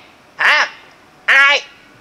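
A man's voice: two short, drawn-out questioning exclamations, the second a 'who...?'.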